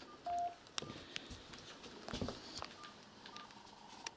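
Electronic keypad beeps: one longer beep about a quarter second in, then several short single beeps at irregular intervals, with faint clicks between them, as numbers are keyed in.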